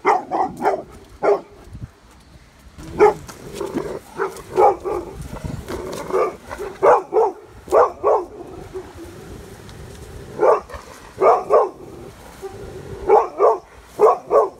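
A golden retriever barking at another dog: short, sharp barks, mostly in pairs or threes, repeated every second or two.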